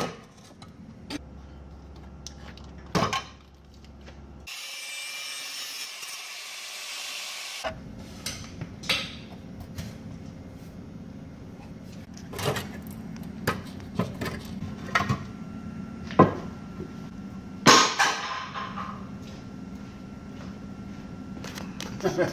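A pry bar working the rear upper A-arm free from a Jeep Grand Cherokee WJ's frame and axle: scattered sharp metal knocks and clanks with scraping between them, the loudest near the end. A few seconds of steady hiss come about five seconds in.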